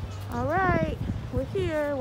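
A person's voice: one drawn-out vocal sound that rises and then falls in pitch, followed near the end by the start of speech.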